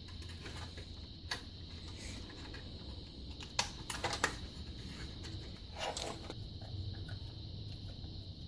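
Faint, scattered clicks and taps, about five of them, of small metal and plastic parts being handled and pressed together as the metal extruder plate is fitted onto a Cube 3 PLA filament cartridge, over a faint steady hum.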